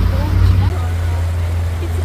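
Small tour boat under way on open water: a loud, steady low rumble with a rushing hiss, from the boat's motor, the water churning in its wake and wind on the microphone.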